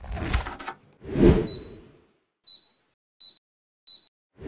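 Logo-animation sound effects: whooshes, the biggest swelling and fading about a second in, followed by three short, high beeps spaced evenly about two-thirds of a second apart.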